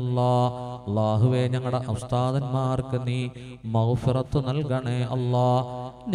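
A man's voice chanting a prayer of supplication in long, drawn-out melodic phrases, three of them with short breaks about one second in and a little past halfway.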